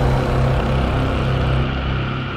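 Deep, steady cinematic drone: a low hum with a hiss above it that thins out towards the end.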